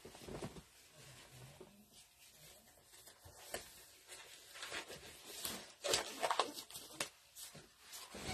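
Faint rustling with scattered short snaps and clicks, busier and louder in the second half, of gloves being pulled on by hand.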